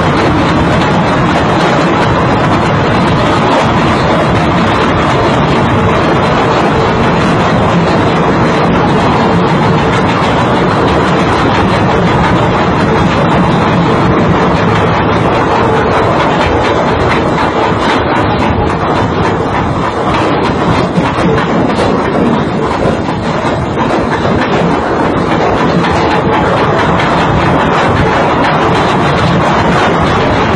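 Ship's anchor chain running out uncontrolled over the windlass, a loud continuous clattering rattle.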